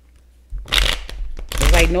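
A deck of tarot cards being shuffled by hand: two short papery riffles, about half a second and a second and a half in, the second louder.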